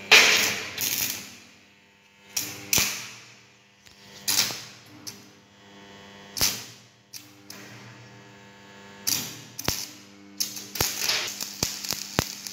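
Stick (shielded metal arc) welding tack welds: about six short crackling bursts as the arc is struck and held briefly to tack two overlapped plates for a lap joint. A steady electrical hum runs underneath.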